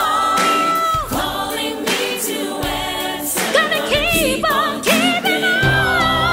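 Gospel choir singing with a lead vocalist over a band of guitar, bass, keys and drums. The lead holds one long high note for about a second, then sings wavering runs over the choir, and a heavier bass line comes in near the end.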